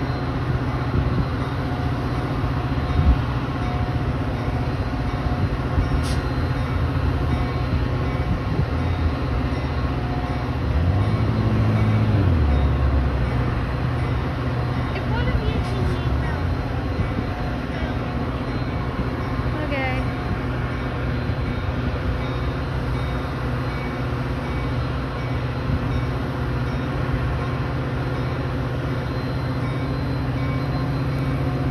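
Metra diesel locomotive running with a steady low engine hum. The engine swells louder for about a second and a half around eleven seconds in.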